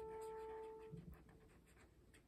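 A single piano note dying away, fading out about a second in, followed by faint marker-on-paper scratching.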